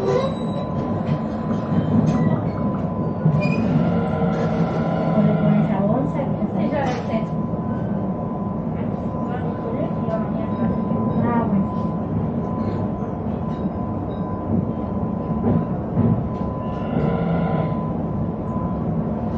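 Interior running noise of a Sarmiento line electric multiple-unit train in motion: a steady low rumble of the wheels on the track under a constant thin high tone, with a few brief higher-pitched passages rising over it.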